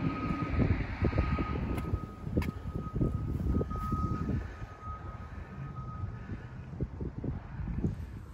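Outdoor traffic noise: a low rumble of vehicles passing, with a faint steady high-pitched tone that stops about six seconds in.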